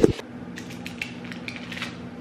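A thump of the camera being handled, then a few light clicks and taps as cookies are picked up off a baking tray, over a low steady hum.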